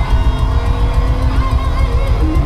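Live rock band playing loud, with distorted electric guitars, bass and fast, driving drums, recorded from within the crowd.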